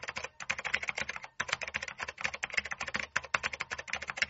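Computer keyboard typing sound effect: a rapid run of key clicks with a brief break about a second and a half in, matched to on-screen text being typed out letter by letter.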